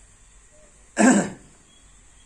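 A man clears his throat once, a single short, loud burst about a second in.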